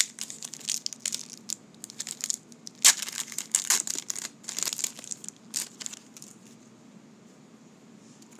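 Plastic wrapper of a 1990 Score football card pack crinkling and crackling as it is torn open by hand. The crackles come in a busy run, the loudest about three seconds in, and die away about six seconds in.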